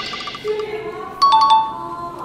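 Short electronic chime sound effect: a few quick, bright, bell-like notes about a second in, cueing a wrong answer.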